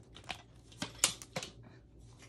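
Sheets of cardstock being handled and a plastic paper trimmer lifted off a cutting mat: a handful of short rustles and light taps, the sharpest about halfway through.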